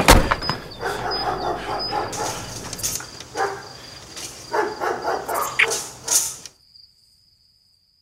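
A thump at the start, then a dog barking several times; the sound cuts off suddenly about six and a half seconds in.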